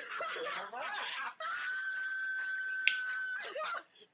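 A man's high-pitched screaming and squealing at the burn of a too-hot chicken wing, including one long held squeal of about two seconds in the middle, with a single sharp click near its end.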